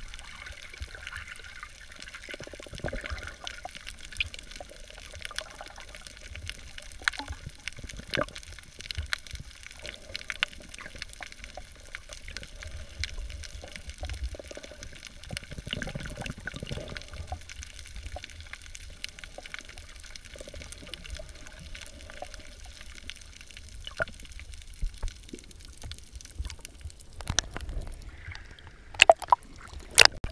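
Water heard from an underwater camera over a coral reef: a steady wash with many scattered sharp clicks, and a few louder splashing bursts near the end as the camera nears the surface.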